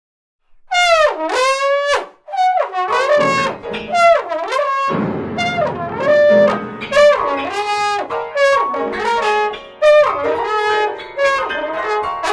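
Trombone playing a free-jazz improvisation with wide sliding pitch bends, swooping down and back up. Piano joins underneath about three seconds in and thickens a couple of seconds later.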